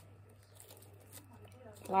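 Soft slime mixed with clay being stretched and folded by hand, giving faint, scattered little clicks and pops as air pockets in it break.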